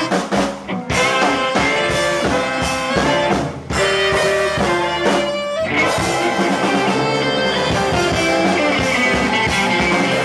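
Live blues band with a baritone saxophone and a second saxophone playing short riffs together; the music turns fuller and denser about six seconds in.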